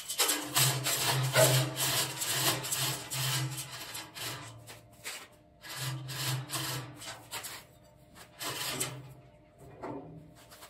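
Overhead electric chain hoist running in three bursts, its motor humming while the chain clatters through it: a long run of about three and a half seconds, then two short runs.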